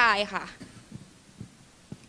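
A woman speaking through a microphone finishes a phrase in the first half second, followed by quiet room tone with a couple of faint low thumps.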